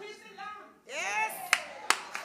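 A few sharp hand claps start near the end, after a voice calls out with a long pitch sweep about a second in: congregation clapping in a church hall as a speaker leaves the pulpit.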